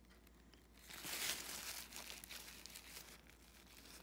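Faint crumpling and rustling of a paper tissue pressed and squeezed in the hand, loudest about a second in, then a few light crinkles.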